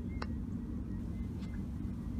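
Steady low rumble of background noise with a faint hum, and one faint short click about a quarter of a second in.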